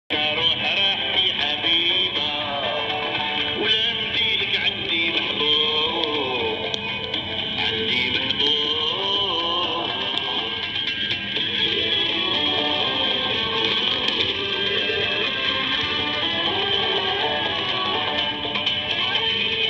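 Music from Radio Algeria's longwave broadcast on 252 kHz AM, heard through a radio receiver with a steady background of static.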